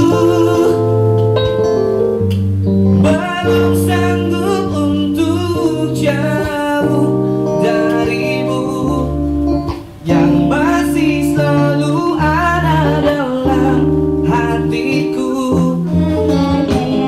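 A man sings a slow song into a handheld microphone over a live band with guitar and keyboard. The music drops out briefly about ten seconds in, then resumes.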